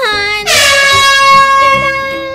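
A loud, horn-like sound effect: a short downward slide, then one held note with a bright, buzzy tone that becomes loud about half a second in and fades slowly.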